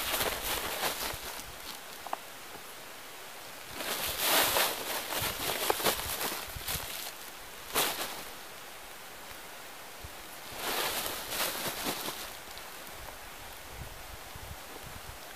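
Woven plastic corn sack crinkling and cloth rustling as towels and rags are stuffed into it, in four bursts with quieter pauses between.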